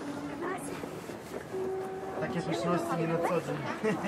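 Low background murmur of voices, with faint music holding long, steady notes underneath.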